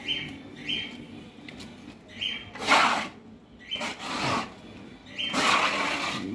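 A hand brush scrubbing wet concrete, heard as two strong scraping strokes near the middle and near the end. Short high bird chirps sound five times in between.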